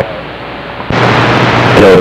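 Static hiss from a CB radio receiver's speaker between transmissions. It is fairly quiet at first, then steps up louder about a second in with a low hum under it. A voice begins right at the end.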